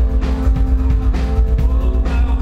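Live rock band playing loudly: electric guitar over heavy bass, with steady drum hits.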